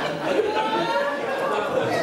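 Several voices of a church congregation talking at once, a steady overlapping chatter.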